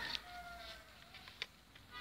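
Faint high-pitched whine from the toy RC car's small electric motor, fading out after about a second, with a faint click near the middle.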